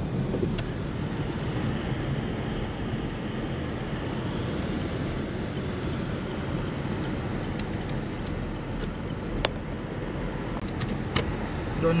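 Steady road noise heard inside a moving car's cabin: engine and tyres on a wet road, with a few faint clicks.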